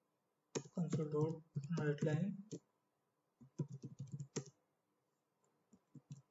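Typing on a computer keyboard: a quick run of keystroke clicks a little past the middle.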